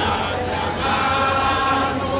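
Many voices singing together in a slow chant, holding long notes over a background of crowd noise.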